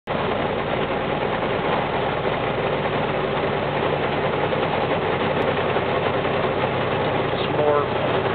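Steady engine and tyre noise heard from inside a vehicle's cabin as it drives up a mountain highway grade. A voice starts near the end.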